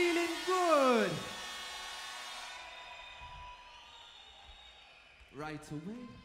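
A man's voice over the stage sound system calling out in one long call that slides down in pitch and rings on after it stops, then a shorter call near the end.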